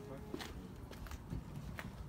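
Footsteps on concrete, a few light taps over a quiet background.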